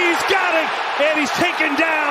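A male television commentator's voice calling the play, over steady stadium crowd noise.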